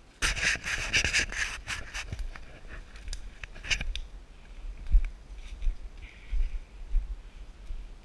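Footsteps through leafy forest undergrowth: leaves and brush crackling and scraping, loudest in the first two seconds and again briefly near four seconds, followed by irregular dull footfall thumps.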